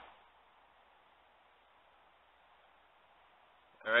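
Near silence: faint steady hiss of room tone, with a man's voice coming in just before the end.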